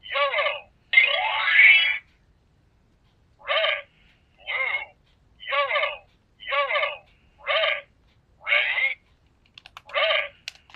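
Handheld electronic memory-game cube toy sounding a sequence of short electronic tones, each about half a second, with a longer rising sweep about a second in, then after a short pause about one tone a second.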